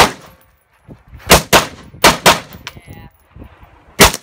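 Scoped AR-style rifle fired rapidly as sharp single cracks: one shot at the start, then two quick pairs about a second and two seconds in, and another shot at the very end.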